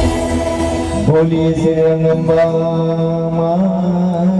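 Mantra chanting at a puja, sung in long held tones that slide up into each new note, starting about a second in.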